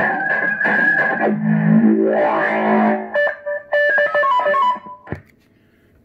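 The fourth caller sound ('llamador') of a CB radio caller box fitted to an RCI 69FFB4 radio: a short musical phrase for about three seconds, then a quick run of electronic notes stepping down in pitch, cutting off about five seconds in.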